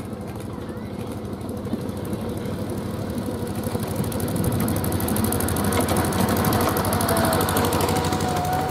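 Miniature railroad train's locomotive engine running with a fast, even beat, growing louder as the train approaches and draws level.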